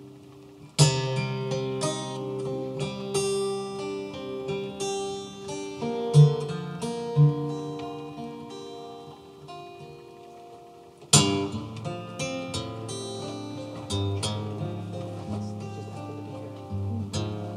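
Steel-string acoustic guitar played solo, a strummed chord about a second in and again near eleven seconds, with picked notes ringing on between, reverberating off the slot canyon's rock walls.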